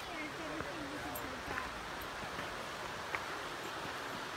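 Faint voices in the first second, over a steady outdoor background hiss, with a light click at the start and a couple of small ticks later.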